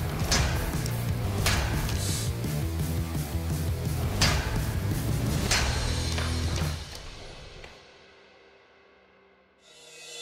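Steel saber blade chopping into an ice block: several sharp, irregularly spaced strikes over a music bed with a steady low beat. The music fades out about seven seconds in, leaving near quiet.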